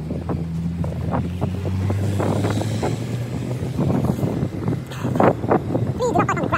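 A car passing close by and driving on up the drive, its engine a steady low hum that fades after about four seconds. Footsteps on tarmac and wind on the microphone run underneath.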